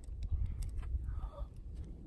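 Uneven low rumble of wind buffeting the microphone outdoors, with a few faint clicks.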